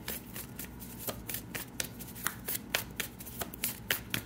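Tarot cards being shuffled by hand: a run of quick, irregular card clicks, several a second.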